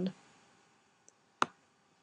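A computer mouse button clicked once, sharply, about one and a half seconds in, with a fainter tick just before it, over quiet room tone.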